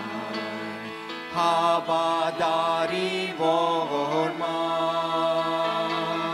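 A vocal trio of two women and a man singing an Armenian hymn in harmony into microphones, in long held notes.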